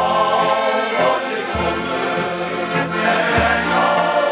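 Shanty choir of men singing together, accompanied by two accordions. The accordion bass sounds a new low note about every two seconds.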